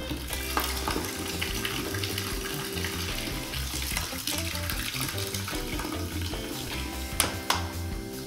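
Canned drinks poured in a steady stream into liquid in a plastic bucket, a continuous splashing hiss over background music. Two sharp clicks come near the end.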